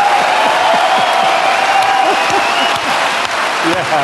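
Large audience applauding in a big hall, steady dense clapping with crowd voices calling out among it.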